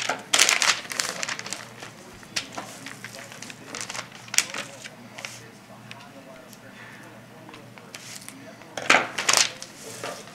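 Paper spread under a deer hind quarter crinkling in short irregular bursts as the meat is shifted and cut on it, loudest just after the start and again near the end.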